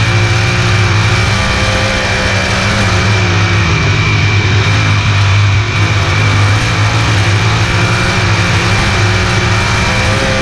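A sprint car's 410 V8 heard from the in-car camera, running at a fairly steady speed with small rises and dips in pitch. A steady high whine sits above it.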